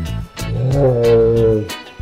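A loud roar, like a big cat's, held for about a second starting about half a second in, over background music with a steady beat.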